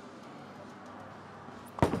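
Quiet bowling-alley room noise, then near the end a single sharp thud as a bowling ball is released and lands on the wooden lane.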